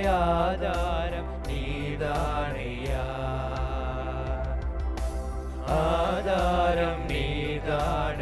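A small male vocal group singing a gospel song into microphones, holding long notes that swell near the start and again about six seconds in, over a steady low accompaniment.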